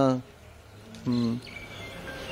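A man's voice trails off, then one short spoken syllable about a second in, with quiet outdoor background between and a faint thin high tone.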